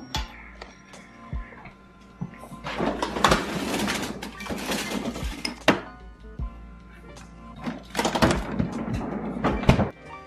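Background music over a pull-out freezer drawer being handled: two stretches of sliding and clatter with knocks as frozen packages are moved and a bowl is set in, the first about three seconds in and the second near the end.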